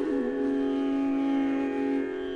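Instrumental music: a short downward slide just after the start settles into one long held note over a steady drone.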